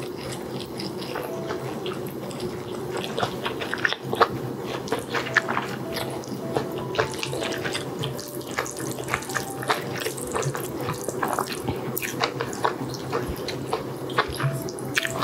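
Close-miked wet mouth sounds of someone eating spicy ramen noodles, chewing and smacking in a dense run of small wet clicks.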